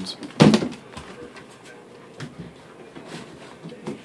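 A man's short, loud vocal noise about half a second in, then a quiet room with a few faint clicks.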